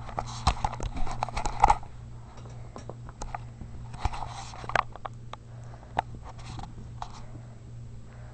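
Chihuahua puppy eating wet canned food from a bowl: irregular clicks and smacks of chewing and licking, busiest in the first two seconds and again about four seconds in.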